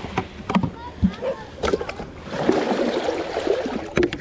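Small waves washing onto the sand, with water splashing and sloshing as a plastic YETI bucket is dipped into the shallows to fill it near the end.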